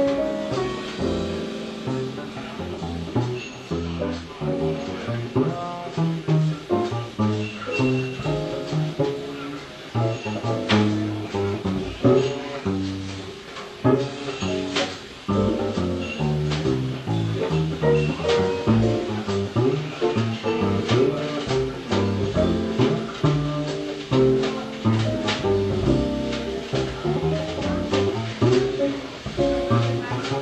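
Live jazz combo of acoustic piano, upright double bass and drums playing a slow tune, with the plucked bass notes prominent under piano chords.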